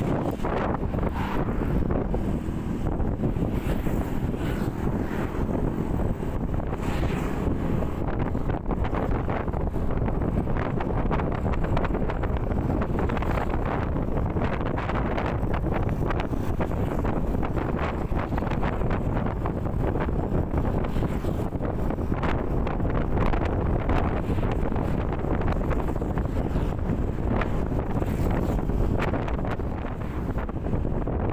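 Steady wind noise buffeting the microphone of a helmet camera on a Yamaha NMAX scooter riding at about 35–45 km/h, with the scooter's engine running underneath.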